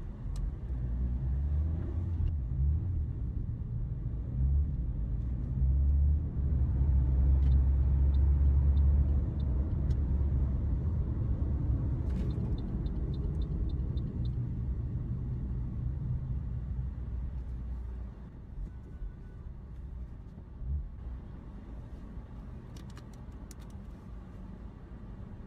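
Low engine and road rumble of a car at motorway speed, heard from inside the cabin. It is loudest in the middle and falls away about three quarters of the way through as the car slows, with a faint run of light ticks along the way.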